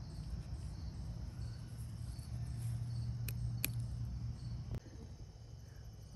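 Insects chirring faintly and steadily, under a low hum that grows louder in the middle and cuts off suddenly a little before the end. Two sharp clicks come close together midway.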